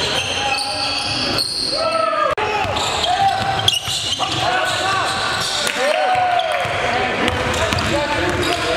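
Live gym sound of a basketball game: a basketball bouncing on a wooden gym floor, with players' and onlookers' voices echoing in the hall. The sound breaks off briefly at cuts between clips, most sharply about two seconds in.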